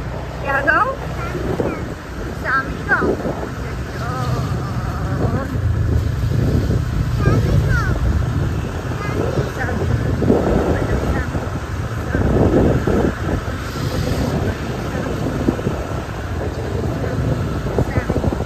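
Wind buffeting the microphone over the steady low running of a motor scooter, with snatches of voices now and then.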